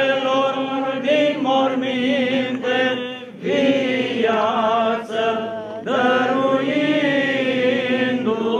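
Choir singing Orthodox Easter liturgical chant in long, held phrases with a slow wavering in pitch, pausing briefly about three and a half seconds and six seconds in.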